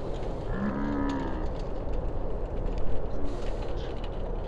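A person's drawn-out vocal call, lasting about a second from about half a second in, its pitch rising then falling. It plays over steady low background noise, with a sharp knock near three seconds in.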